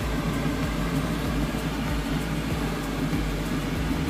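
Steady low mechanical hum with an even hiss over it.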